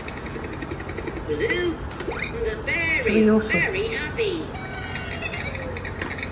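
A high-pitched voice making a few short, sliding sing-song sounds, starting about a second and a half in and stopping about a second and a half before the end.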